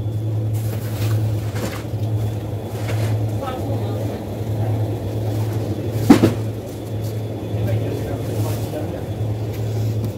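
Steady low hum of a supermarket's background, with faint distant voices, and one sharp knock about six seconds in.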